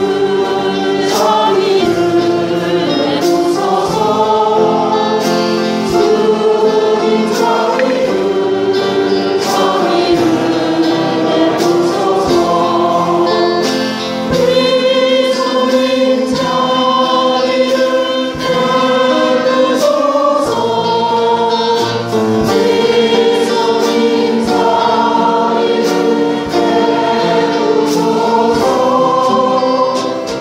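Choir singing a sung part of the Catholic Mass, with instrumental accompaniment keeping a regular beat.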